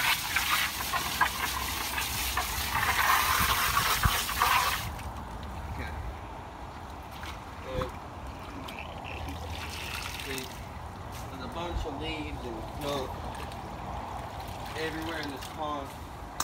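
Water rushing and splashing into a shallow, half-drained pond for about five seconds, then cutting off suddenly.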